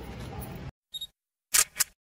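Camera shutter sound effect: outdoor street ambience cuts out, then a short high beep and a quick double click of the shutter, as if a photo is snapped.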